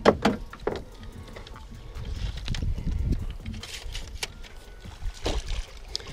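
A low rumble of wind and moving water around a small boat, with a few sharp clicks and knocks from a baitcasting rod and reel being handled while a fish is reeled in.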